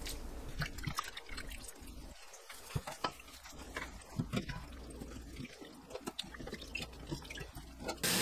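Raw shrimp being swished by a gloved hand in a stainless steel bowl of salted water: soft, irregular splashing and dripping.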